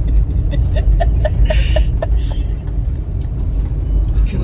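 Steady low rumble of a car's road and engine noise heard from inside the cabin while driving. A woman laughs in short rapid pulses, about four a second, during the first two seconds.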